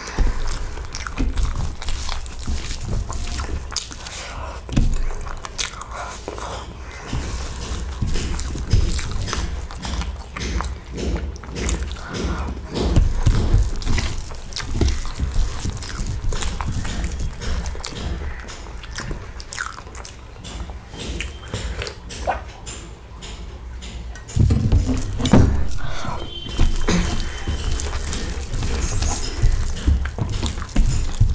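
Close-miked eating sounds: chewing and wet mouth clicks and smacks while masala dosa with potato filling is eaten by hand, mixed with fingers working the food on a banana leaf.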